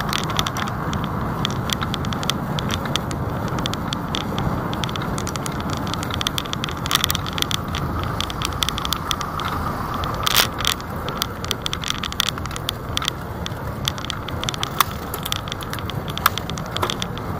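Steady road and traffic rumble heard from a moving bicycle, with continual sharp rattling and clicking from the bike and its camera mount over the road surface. The loudest clatter comes about ten seconds in.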